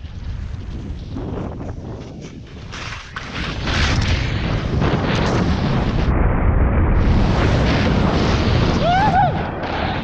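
Wind buffeting the microphone and skis hissing through powder snow during a fast downhill run, a low rushing rumble that gets louder about a third of the way in. A brief voice cry rises and falls near the end.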